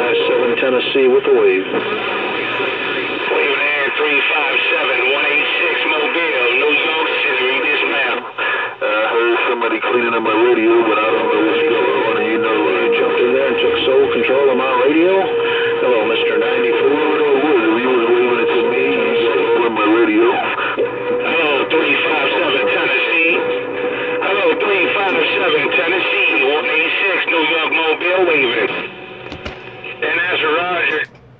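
A Uniden Bearcat CB radio's speaker playing a strong incoming transmission. The sound is unintelligible, narrow, radio-quality audio of voices and music-like tones, with a steady whistle held for several seconds in the middle and a brief dropout about eight seconds in.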